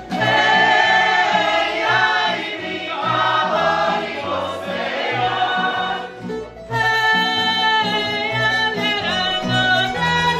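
Women's voices singing a Slavonian folk song in unison over a tamburica band with plucked bass. About six and a half seconds in the singing stops and the band plays on alone.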